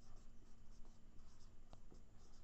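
Marker pen writing on a whiteboard: a run of faint, short strokes as a word is written out.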